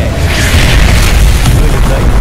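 Loud explosion sound effects: a deep, continuous booming rumble, with a rushing blast that rises about half a second in, and music underneath.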